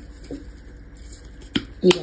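Quiet kitchen room tone with two short, sharp clicks near the end, the second louder, from kitchen items being handled while a pasta salad is seasoned.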